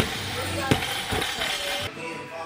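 A 100 kg barbell with rubber bumper plates dropped from overhead onto a lifting platform: one impact right at the start and a second bang about 0.7 s later as it bounces. Background music with singing plays over it.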